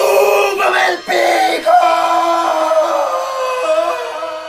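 A cartoon character's long, loud scream as he falls, held for several seconds with a brief break about a second in, its pitch sinking slightly and easing off near the end.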